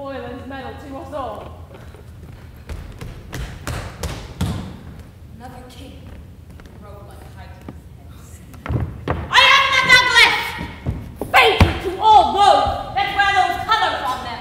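Stage-combat scene on a wooden stage in a large hall: a run of short thumps and thuds in the first half, then loud shouted voices from about nine seconds in, broken by more heavy thuds, with the hall's echo behind them.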